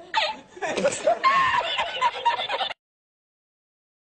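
A man laughing hard in high-pitched bursts, cutting off suddenly a little under three seconds in.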